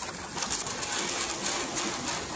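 Garden hose spray nozzle spraying water onto a van's sheet-metal roof, a steady hiss of spray.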